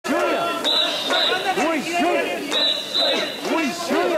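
Mikoshi bearers chanting in a loud, rhythmic group call ("wasshoi") while carrying a portable shrine. A high whistle sounds in pairs of short blasts about every two seconds, keeping the carrying rhythm.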